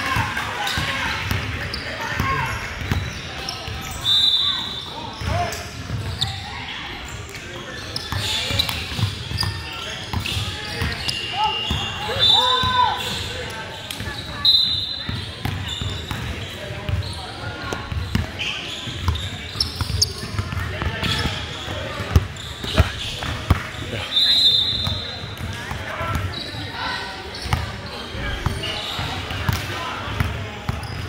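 Basketball game in a large, echoing gym: a ball bouncing on the hardwood floor, with sneakers squeaking in short high chirps several times. Players' and onlookers' voices mix in throughout.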